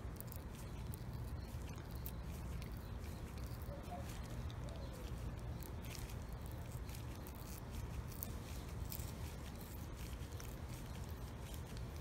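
Pipe cutter being turned round and round the steel can of an 18650 lithium-ion cell, its wheel scoring the casing with faint scratchy clicks, over a steady low background rumble.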